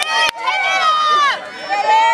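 High-pitched voices shouting and calling out, with no clear words, and a single sharp knock about a third of a second in.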